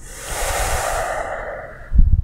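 A man taking one long, deep breath, lasting nearly two seconds, with a short low thump right at the end.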